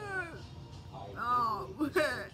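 Meow-like high-pitched calls: a short falling call at the start, a longer one that rises and falls about a second in, and a brief one near the end.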